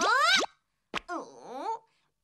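Animated character's voice: a rising "oh!" at the start, a single short click about a second in, then a strained vocal effort sound whose pitch dips and rises as she winds up to throw a snowball.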